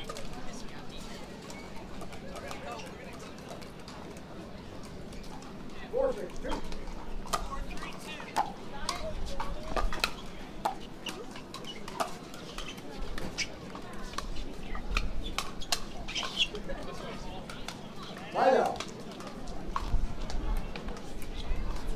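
Pickleball rally: sharp pops of paddles striking the plastic ball, roughly one every half second through the middle stretch, over a steady murmur of spectators. A short, loud burst of voices comes near the end.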